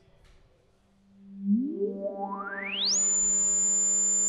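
Korg ARP 2600 FS synthesizer's filter self-oscillating at 75% resonance. After about a second of near quiet, a low buzzy tone comes in. A whistling pitch then sweeps smoothly upward out of it over about a second and a half as the cutoff is opened, and settles into a steady high whistle above the buzz.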